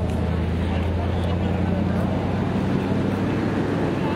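Steady low rumble of outdoor street noise, with faint voices of passers-by.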